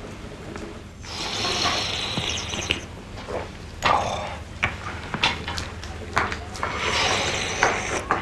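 Noisy slurping of hot coffee from small cups: one long slurp a second in and another near the end, with a few sharp clinks of cups on saucers in between.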